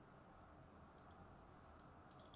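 Near silence: quiet room tone with a few faint computer clicks about a second in.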